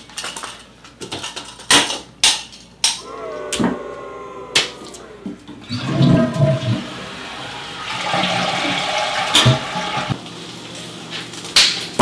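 Clicks and crackles of a toilet-paper roll being handled, then a toilet flushing about halfway through: a rush of water that eases off near the end.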